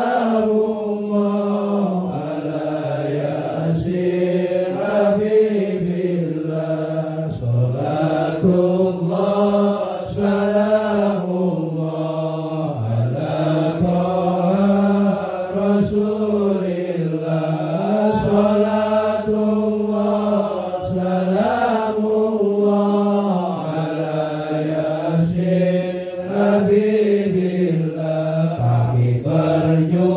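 A man's solo voice chanting a sholawat in long, drawn-out notes that glide up and down in pitch, with short breaks for breath between phrases.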